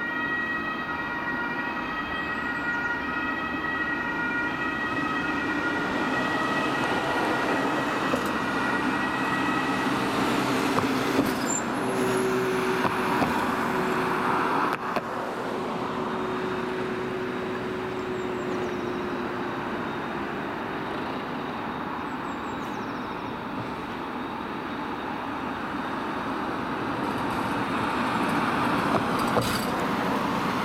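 German ambulance two-tone sirens (Martinshorn) sounding as the ambulances drive past, the tones clearest in the first third and then fading under engine and tyre noise. Near the end another ambulance passes close, and its road noise swells.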